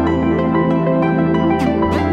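Background music in an ambient, new-age style: sustained notes over a steady low bass, with a falling sweep near the end.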